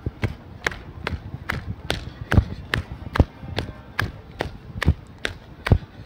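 Footfalls of a person jogging, an even series of thuds about two and a half a second, picked up by handheld smartphone microphones.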